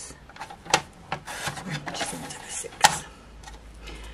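Tonic paper trimmer's cutting head sliding down its rail through a strip of cardstock: a rubbing slide of about a second and a half, with a sharp click before it and a louder click as it ends.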